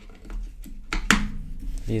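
AA batteries being pressed into a plastic remote control's battery compartment: a few sharp clicks and taps, the loudest about a second in.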